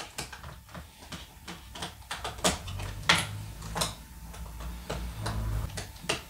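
Small screwdriver undoing the captive screws of a MacBook's memory cover in the battery bay, with irregular small clicks and light knocks as the screws turn and the cover is handled.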